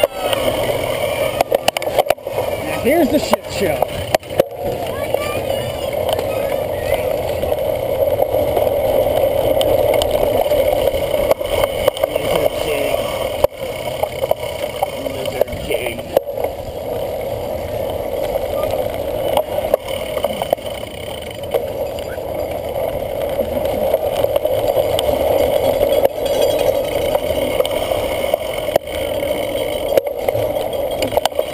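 Riding noise picked up by a handlebar-mounted camera on a cyclocross bike rolling over grass in a pack: a steady rushing of wind and tyres with scattered rattles and clicks from the bike, and voices shouting over it.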